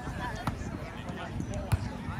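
A volleyball struck twice by players' hands during a rally, two sharp slaps about half a second in and near the end, over the chatter of players and onlookers.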